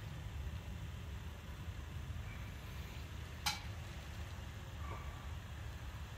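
Low, steady background hum with one sharp click about three and a half seconds in.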